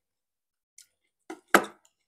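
Knife work on a rack of oven-baked pork ribs on a glass plate: a couple of faint clicks, then one sharper click about one and a half seconds in as the piece is cut free.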